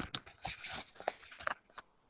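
A run of sharp clicks and rustling noise picked up over a video-call microphone, stopping about two seconds in.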